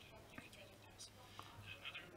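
Near silence: faint, indistinct speech in the background with a few soft clicks.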